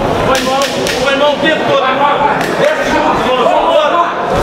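Boxing gloves landing punches: a quick run of sharp smacks near the start and another pair about two and a half seconds in, over voices calling out throughout.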